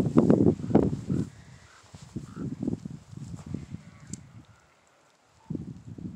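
Irregular low thuds and rumbling from footsteps and the handheld camera knocking about as it is carried across dry pasture ground. They come in clusters, go quiet for a moment about five seconds in, then start again near the end.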